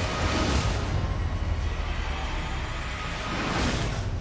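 Film trailer soundtrack: music under a heavy low rumble and whooshing sound effects, with a rising whoosh near the end.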